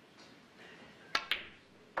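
Snooker cue tip striking the cue ball, then the cue ball striking a red about a tenth of a second later: two sharp clicks in quick succession about a second in.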